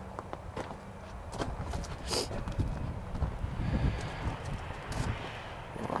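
Footsteps crunching on gravel in an irregular walking rhythm, with a steady low hum underneath.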